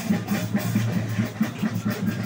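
Music with a steady, fast drum beat and percussion, played by a street parade band.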